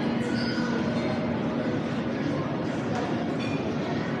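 Steady indoor shopping-mall din: a dense, even wash of background noise with a faint low hum through the first half.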